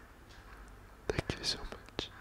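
A man's brief soft whisper about halfway in, after a quiet second.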